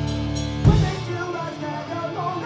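Punk band live: a distorted guitar and bass chord is held with a strong low end, then ends on one sharp hit about two-thirds of a second in. After that the bass drops out and yelling voices carry on over what is left ringing, the sign of a song ending.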